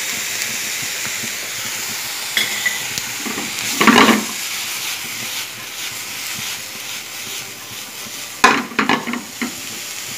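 Diced vegetables sizzling steadily in a frying pan, with two short spells of stirring clattering against the pan, about four seconds in and again near nine seconds.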